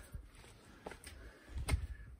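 Handling noises from a pop-up gazebo's metal leg: a sharp click a little under a second in, then a few low thumps with another click near the end.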